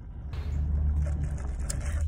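Steady low rumble of a car's engine and road noise inside the cabin, fading in just after a cut, with no voices over it.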